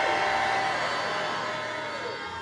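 A congregation's response after a prayer: many voices blended into one crowd noise, slowly fading.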